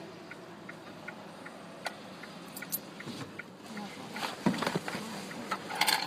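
Low background noise with faint, muffled voices, mainly in the second half, and a few soft clicks.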